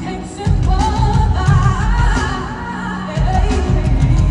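A female lead vocalist singing a slow R&B ballad with vibrato over band and heavy bass, heard live through a stadium sound system. The bass drops out briefly twice, near the start and about three quarters in.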